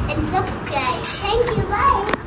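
A young girl's voice, talking playfully.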